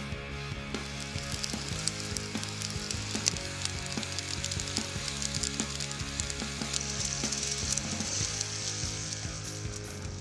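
Hot oil sizzling and crackling in frying pans set on a grill over an open campfire, loudest in the later part, under steady background music.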